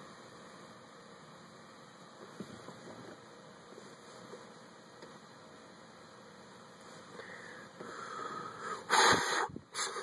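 A man drawing on a menthol cigarette, then blowing the smoke out in a loud, breathy exhale near the end, with a short second puff after it.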